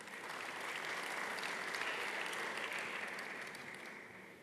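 Audience applauding, building over the first second, holding steady, then dying away toward the end.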